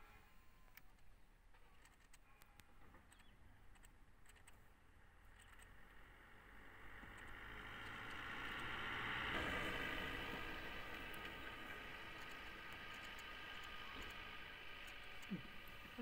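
Faint noise of a passing motor vehicle, swelling from about six seconds in, loudest near the middle, then holding on; a few light clicks come before it.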